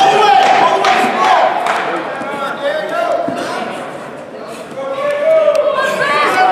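Voices shouting in a large hall during a grappling scramble, with a few thuds of bodies hitting the mat. The shouting is loudest in the first two seconds and again near the end, and dips about four seconds in.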